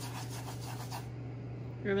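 A molasses cookie dough ball rolling around in granulated sugar in a bowl, a gritty rubbing that dies away about a second in.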